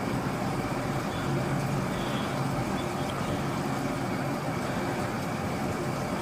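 Steady background noise: an even hiss with a faint low hum, unchanging throughout.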